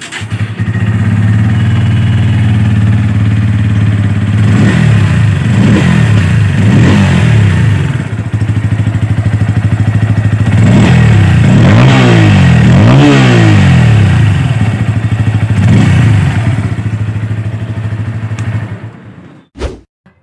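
Bajaj Pulsar P150's 150 cc single-cylinder engine, heard through its underbelly exhaust. It starts at the start button, idles steadily, and is blipped up in short revs about seven times. It cuts off suddenly near the end when the kill switch is turned off.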